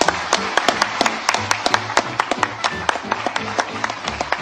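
Crowd applauding, a dense run of irregular claps, over background music.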